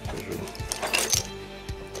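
Loose metal wristwatches and watch parts clinking against each other, a few short clicks, as a hand sorts through a box of them, over steady background music.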